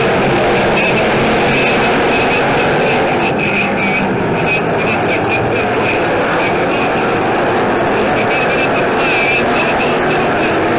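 Several dirt-track stock cars racing around the oval, their engines running at speed in a loud, steady, overlapping drone.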